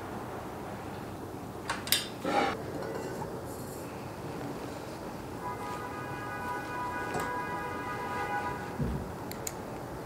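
Screwdriver and bolts clinking against a white metal desk frame during assembly: a few sharp metallic clinks about two seconds in, then a dull thump near the end followed by two light clicks.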